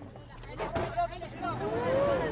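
Humvee engine running inside the cabin while the stuck vehicle tries to pull free, under a man's shouted commands to reverse.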